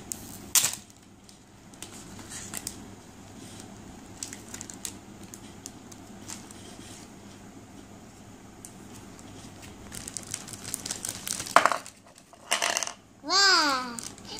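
Thin plastic packaging crinkling and crackling in small hands as it is pulled and torn open, with scattered clicks and rustles and a sharper crackle about half a second in. Near the end a child gives a high, excited vocal squeal.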